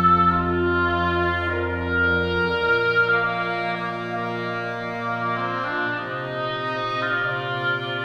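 Orchestra with strings playing a slow passage of long sustained chords, the harmony moving to a new chord every second or two.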